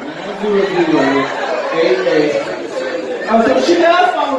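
Speech and chatter: people talking in a busy room, with no other distinct sound.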